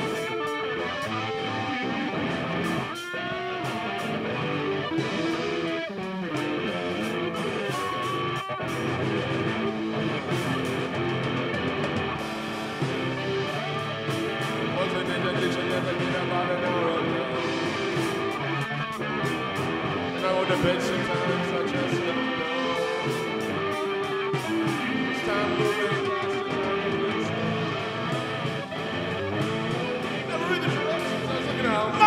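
Instrumental break of a rock song, led by guitar, with a voice singing a couple of words near the end.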